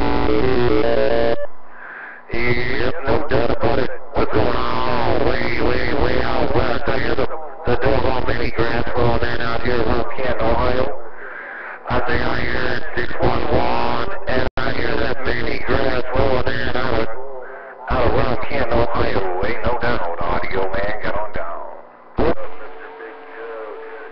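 A distant station's voice coming through a CB radio's speaker, thin and band-limited, in several stretches of a few seconds that start and stop abruptly with short gaps between them.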